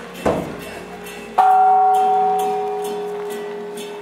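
Struck metal percussion: a short knock about a quarter second in, then a bell-like stroke about 1.4 s in that rings on and fades slowly. A steady lower tone is held underneath throughout.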